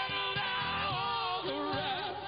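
Live rock band playing, with a singer holding long notes into a microphone; the voice slides up into the first note and moves to a lower note near the end.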